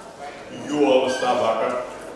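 A man's voice through a podium microphone: one drawn-out, wavering vocal sound lasting about a second in the middle.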